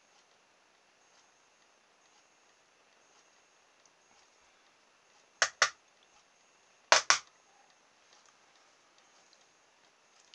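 Two quick double clicks, sharp and loud, about a second and a half apart, over otherwise quiet room tone.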